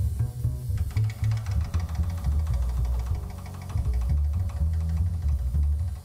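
Acoustic double bass plucked pizzicato, playing a run of deep notes, with piano playing along.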